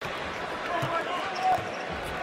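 Basketball arena game sound: steady crowd noise with a basketball being dribbled on the hardwood court, and a brief louder moment about a second and a half in.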